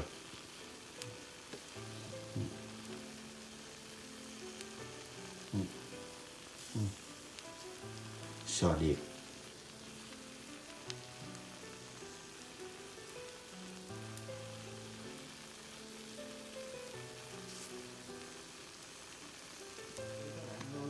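Japanese scallops in the shell sizzling on a grill, a faint steady hiss, before the scallion oil goes on. Soft background music plays over it.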